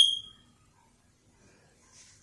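A single high-pitched ping that sounds at once and fades away within about half a second.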